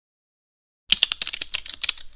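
Keyboard typing sound effect: a quick, irregular run of key clicks starting about a second in, matched to text being typed out on screen.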